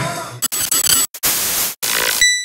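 TV-static sound effect: loud white-noise hiss in bursts, broken twice by brief dropouts, as the picture glitches. Music fades out just before the static starts.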